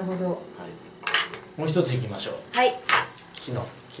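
Bare wooden hammered-dulcimer hammers clattering as they are picked up and handled: several separate hard clicks and knocks. The strings' last notes are fading just at the start.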